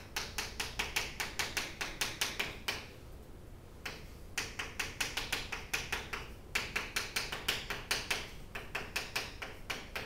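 Chalk writing on a chalkboard: a quick run of sharp taps and scrapes, about five a second, with a pause of about a second roughly three seconds in.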